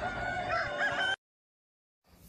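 A flock of roosters crowing and clucking, faint and overlapping, cutting off suddenly a little over a second in.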